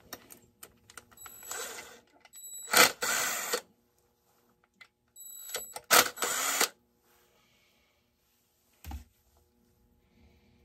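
Cordless drill-driver running in two bursts, one of about two seconds and a shorter one of about a second and a half, backing screws out of a chainsaw's housing. A single short knock near the end.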